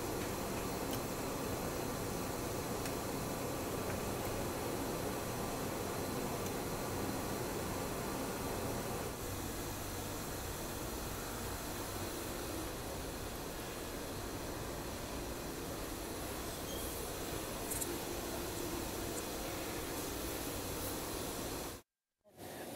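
Steady background noise of a workroom, an even hiss with a low hum, which shifts slightly about nine seconds in and cuts out just before the end.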